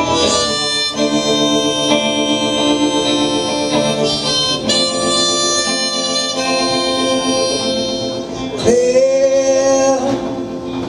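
Harmonica played in long held chords over guitar during an instrumental break. The chord changes about every four seconds, and a louder held note comes in near the end.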